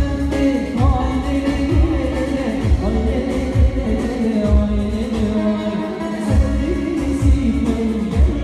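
Live concert music: singing over a backing with a heavy bass beat about once a second.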